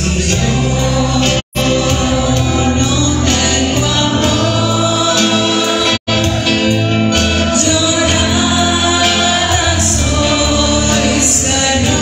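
Religious choir singing with musical accompaniment, steady and loud, broken by two very short dropouts, about a second and a half in and again at six seconds.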